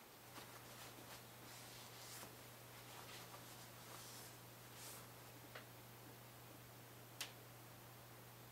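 Faint, intermittent scratching and light ticks of 400-grit wet sandpaper rubbing the lacquer on a rosewood fingerboard to flatten a ridge, with one sharper click about seven seconds in; otherwise near silence.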